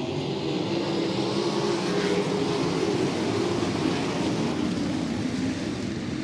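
A field of USAC wingless sprint cars' V8 engines running together in a pack as the field rolls toward the green flag, a steady many-engine drone.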